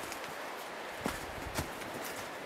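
Footsteps on dry leaf litter and rocky ground, two soft steps about half a second apart, over a steady background hiss.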